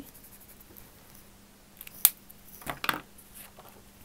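A pen set down on the desk with a sharp click about halfway through, then a brief crisp rustle and scrape of a thick paper card being picked up and handled.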